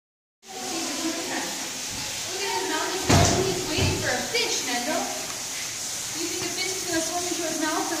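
People talking in the background, with one sharp knock or thump about three seconds in.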